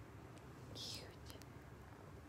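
A short, quiet whispered hiss just before a second in, falling slightly in pitch, followed by a few faint clicks.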